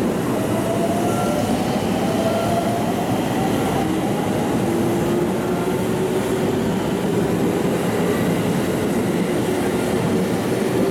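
JR Central 313 series electric train pulling out and picking up speed, its inverter-driven traction motors giving slowly rising whines over a steady rumble of wheels on rail.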